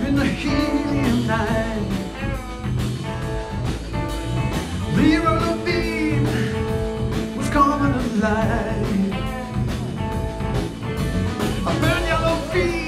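A rock band playing live with electric guitars, bass and drums. A melodic line glides up and down over a steady groove.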